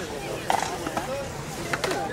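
Indistinct talking between people, a few short phrases of speech without clear words.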